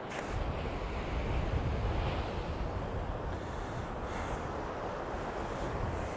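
Rough sea surf breaking steadily on a sandy beach, with wind noise on the microphone underneath.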